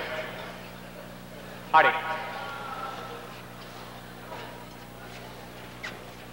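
A referee's single shouted 'Allez!' about two seconds in, restarting a fencing bout, over a steady low hum. A few faint taps follow.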